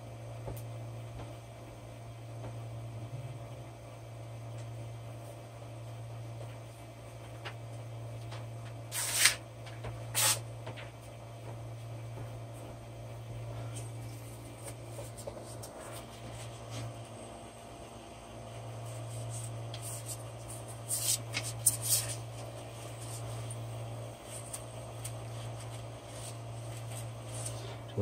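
A sheet of paper rustling and crackling in short bursts, loudest about a third of the way in and again about three quarters in, as it is handled and slid under a 3D printer's nozzle to gauge bed height. A steady low hum runs underneath.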